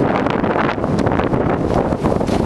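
Wind buffeting the camera's microphone during a fast downhill run, loud and continuous, mixed with the hiss and scrape of sliding through fresh snow.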